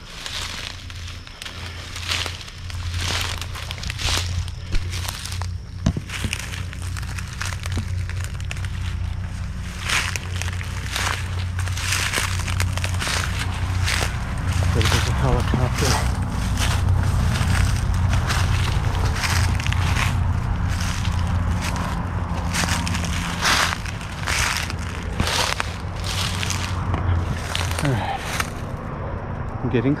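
Footsteps pushing through dense forest undergrowth and leaf litter: irregular crunches and crackles of leaves, twigs and brushed plants, about one or two a second, over a steady low rumble.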